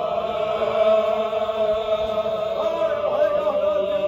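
A group of men chanting a Sufi zikr together, many voices holding one steady chanted pitch, with a few higher voices wavering above it in the second half.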